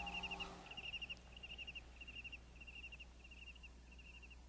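Faint cricket chirping: short high trills of a few quick pulses, repeating about twice a second, over a low steady hum. The last struck note of the music fades out in the first half second.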